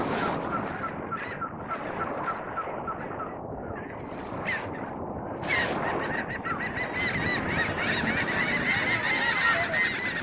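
A flock of seagulls calling over a steady wash of sea and harbour noise, as a port ambience. A few calls repeat at first, and about halfway through they thicken into many overlapping cries.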